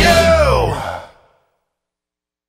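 The closing note of a rock song: a sung note slides down in pitch over a held chord, then fades out completely about a second in.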